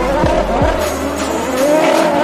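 Intro music with race-car sound effects: tyres squealing in a wavering screech over a kick-drum beat. The beat drops out just under a second in, and the screech carries on.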